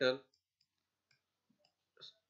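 The last of a man's spoken word right at the start, then near-quiet with a few faint, scattered clicks.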